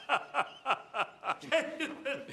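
A man laughing in an even run of short 'ha' bursts, about three a second, each one falling in pitch.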